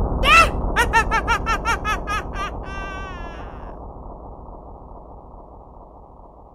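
A high-pitched laugh, a run of quick 'ha's about five a second ending in a short held note, trails away over a steady rumbling whoosh from the wormhole portal. The whole sound fades steadily as it recedes into the portal, and the laugh stops a little past halfway.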